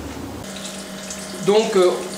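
Steady background noise with a low hum that changes abruptly about half a second in to a quieter, steady hum; a man starts speaking near the end.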